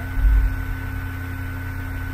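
Steady electrical hum on the recording, with a few fixed tones over a background hiss and a brief low rumble just after the start.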